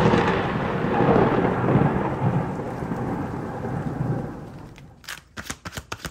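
Thunder rumble with rain, fading away over about five seconds. Near the end come a few sharp clicks of tarot cards being handled.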